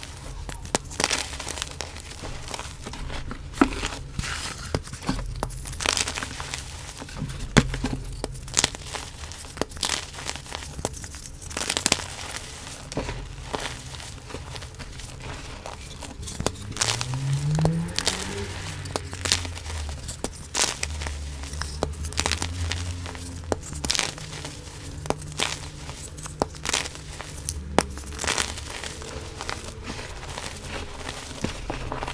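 Hands crushing and crumbling pressed powder reforms and loose baby powder: a continuous run of irregular soft crunches and dry crackles as the packed powder breaks apart and is kneaded.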